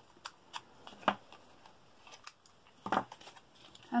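Small scissors snipping thin card: a few short, separate snips, the sharpest about a second in, as a small nick is cut into a card tab.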